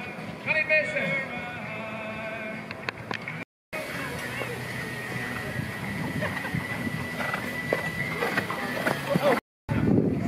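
People's voices over outdoor ambience at the course, with a thin steady high tone for several seconds in the middle; the sound drops out briefly twice where the footage is cut.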